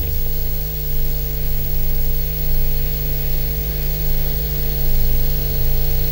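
Steady, unchanging hum on the broadcast audio feed, a low buzz with a few fainter held tones above it and no voice through it: the audio link to the remote guest has dropped out.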